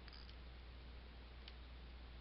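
Near silence: room tone with a low steady hum and a couple of faint ticks.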